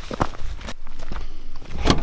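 Footsteps on a loose rocky gravel trail: several separate crunching steps on stones, with a louder knock near the end.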